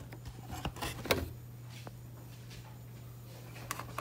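A steady low hum with a few faint, short clicks scattered through it, about half a second to a second in and again shortly before the end.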